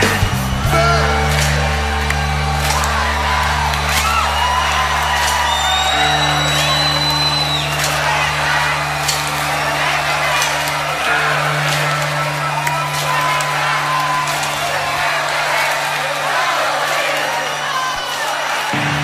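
Live band holding long sustained chords on bass and guitar, with cymbal crashes, while a large crowd cheers and whoops. The low notes drop out briefly near the end, then return.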